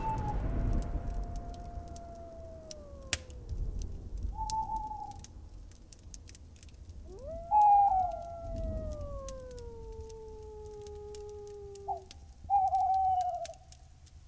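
Long animal howls that rise quickly and then slide slowly down in pitch over several seconds. Two howls overlap in the middle, and short higher cries come in between. Under them runs a low rumble and scattered faint clicks; the loudest cries come about halfway through and near the end.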